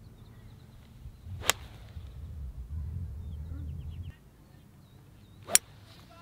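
Golf irons striking balls off the fairway turf: two sharp clicks about four seconds apart, with a low rumble between them.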